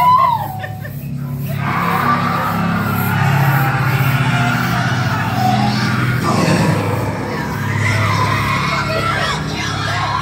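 Haunted-maze soundtrack music with screaming. A short cry rises and falls at the very start, then from about a second and a half in a loud, dense mix of music and screams carries on.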